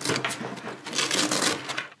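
Padded camera-bag divider being pulled free and shifted by hand: crackly tearing of its hook-and-loop fastening and rustling fabric in quick, dense strokes, stopping just before the end.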